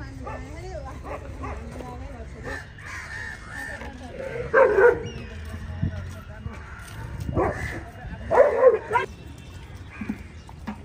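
Street dogs barking while crowded around food, in two short loud bursts of barks, about halfway through and again near the end.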